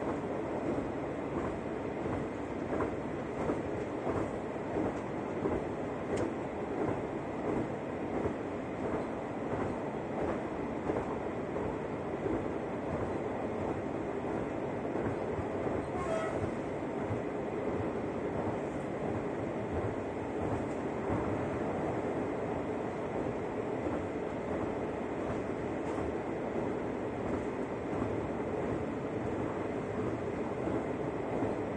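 Cabin noise of an X73500 diesel railcar under way: a steady running rumble and hum, with light rhythmic clicks of the wheels over rail joints in the first third and a brief high squeak about halfway through.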